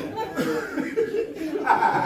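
Men chuckling and laughing at a joke.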